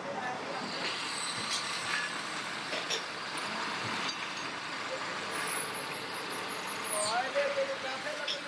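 Steady metal-workshop noise of a drill press machining a cast metal fan part, with voices in the background.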